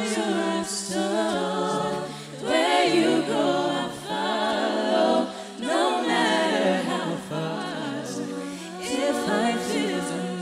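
An a cappella vocal group singing live: a female lead voice over sustained backing harmonies, with vocal percussion. The singing swells and dips every couple of seconds.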